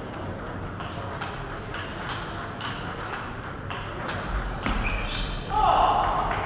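Table tennis ball ticking off the table and paddles: sharp clicks about once a second, then coming faster as a rally gets going near the end, over the murmur of voices in a large hall.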